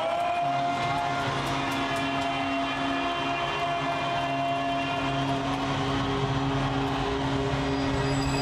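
A steady sound-design drone: several held low and middle tones over an even rushing haze, unchanging throughout.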